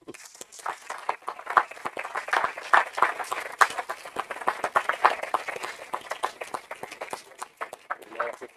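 Audience applause: many people clapping hands at once, starting right away and thinning out near the end.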